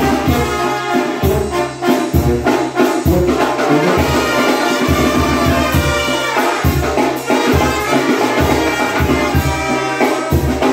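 Mexican banda-style brass band playing live: sousaphone bass notes on a steady beat about once a second under trumpets, trombone and saxophone, with drums and cymbals.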